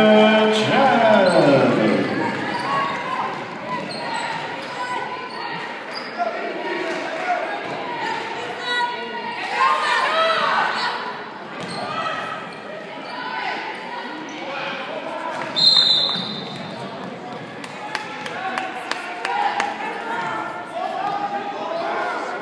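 Girls' basketball game in a gym: the ball bouncing on the hardwood court and voices calling out, echoing in the large hall, loudest in the first couple of seconds. A short, high referee's whistle blast sounds about two-thirds of the way through.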